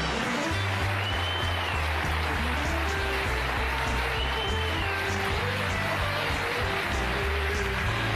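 A band playing an up-tempo play-off tune with a stepping bass line, over audience applause.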